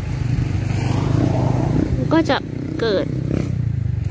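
An engine running steadily, a low even hum with a faint swell about a second in; a woman's voice says a few words in the second half.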